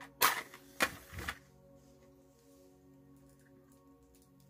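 A match struck against the side of a matchbox: three quick, sharp scrapes within the first second and a half. Soft background music with long held tones plays throughout.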